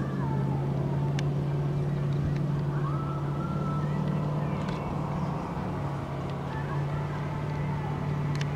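Steady low hum of a running engine or motor, holding one pitch throughout, with faint gliding higher tones above it.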